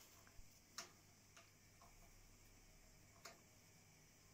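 Near silence with a few faint, sharp clicks, the clearest about a second in and just past three seconds in.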